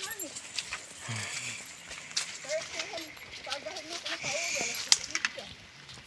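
Quiet talking at a distance, with scattered clicks and rustling from people walking on a dirt trail.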